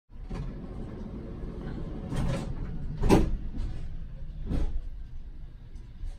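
City street traffic: a steady low rumble with several louder swells of passing noise, the loudest about three seconds in.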